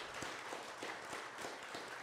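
Audience applauding: many people clapping at once.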